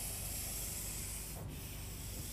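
Pastel pencil scratching across black paper in a long stroke, with a brief break about one and a half seconds in before the next stroke.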